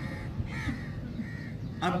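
Crows cawing: three short calls in about a second and a half.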